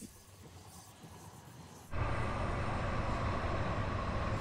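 TRAX light-rail train passing close by. It is faint at first, then from about halfway through it is a loud, steady rumble with a held mid-pitched tone.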